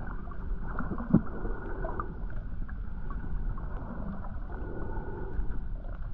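Underwater ambience picked up by a submerged camera: a muffled, steady low rumble of water with scattered faint clicks and one sharp knock about a second in.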